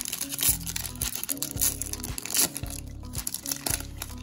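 A foil trading-card pack wrapper crinkling and tearing as it is ripped open, over background music with a steady bass line.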